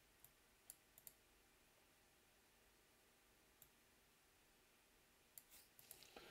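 Near silence: room tone with a few very faint, scattered clicks.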